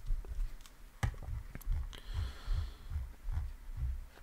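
Faint computer-mouse handling while a PDF is scrolled: a couple of sharp clicks and a run of soft, low thumps a few times a second.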